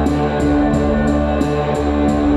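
Live band music: electric guitar and synthesizer holding sustained notes over a steady electronic beat, with a short hi-hat-like tick about three times a second.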